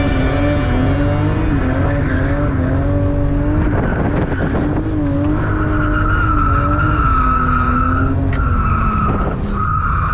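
BMW E36 M3's 3.0-litre S50B30 straight-six, heard from inside the cabin, running high in the revs with its pitch rising and falling on the throttle through a drift. About halfway in a steady high tyre squeal joins it, breaking off briefly twice near the end.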